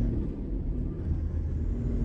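Steady low rumble of engine and road noise heard inside a moving Toyota Land Cruiser Troopy cruising on a tarred road.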